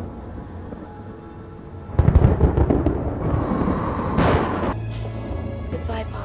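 A sudden loud thunderclap about two seconds in, rumbling on for a couple of seconds, over a film score's sustained low notes.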